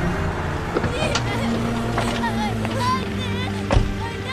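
A van's engine running as it pulls in, with a few knocks and a sharp thump near the end. From about two seconds in, a woman and a child cry out and scream in distress as they are hauled out of the vehicle.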